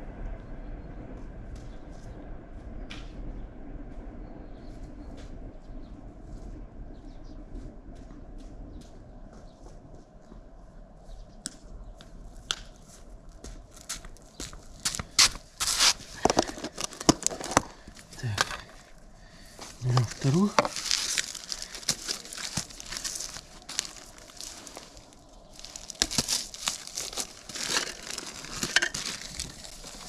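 Plastic tub of crack-repair compound being handled and its lid pulled open: sharp crackling and clicking of plastic, which begins about halfway through and grows dense and loud.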